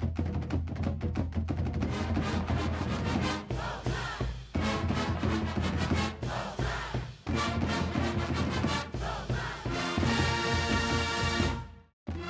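Background music with a driving percussive beat over a steady bass line, cutting off abruptly just before the end.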